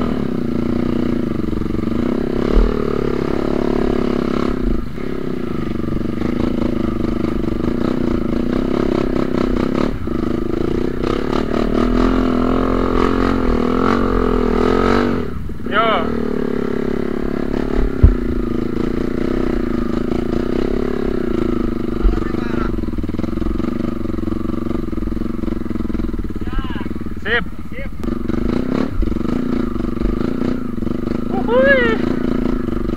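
Yamaha WR155R trail bike's single-cylinder four-stroke engine running under load on a steep dirt climb while the bike is towed by a rope. The revs rise gradually to a peak, then drop sharply about halfway, with a few sharp knocks from the bike along the way.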